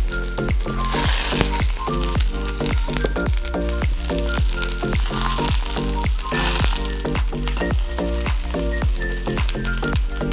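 Fish pieces sizzling in hot oil and spice paste in a wok as they are tipped in and stirred. Background music with a steady beat plays over it.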